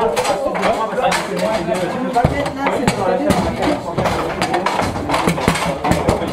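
A foosball game in play: the ball and rod-mounted figures knocking, with irregular sharp clacks as shots are struck and rods hit their stops. Voices and music carry on underneath.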